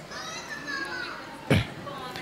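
Faint background chatter of high-pitched voices, children's among them, with a short louder burst about one and a half seconds in.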